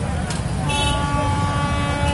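Low rumble of a dense column of motorcycles riding past, with a vehicle horn starting a little under a second in and holding one long steady note.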